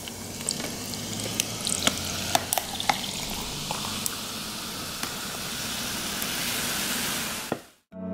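Carbonated energy drink poured from a can over ice into a glass, fizzing and splashing, with scattered clicks of ice. The fizz grows louder in the second half, then cuts off suddenly just before the end.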